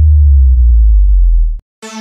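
A very loud, deep synthesized sub-bass tone held for about a second and a half, the bass drop of a brega funk track, cutting off suddenly; after a brief gap, bright synth music comes back in near the end.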